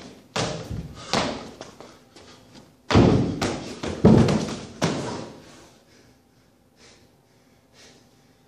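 Feet landing with thuds on a wooden plyo box, then heavier thuds and a crash at about three, four and five seconds in as the jumper falls off the back of the box onto the gym floor.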